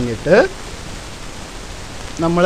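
A man's voice says one short syllable, then a steady background hiss carries on with no other sound.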